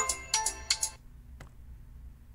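A short electronic chime-like sound effect, ringing tones over a few clicks, fading out about a second in. It is followed by a single faint click and a faint steady hum.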